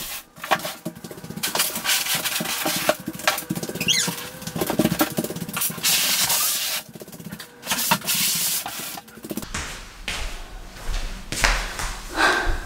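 Large cardboard boxes being pushed and slid across a wooden floor: rough scraping and rubbing in long strokes, with knocks and thuds as they bump and are set upright, and a brief squeak about four seconds in.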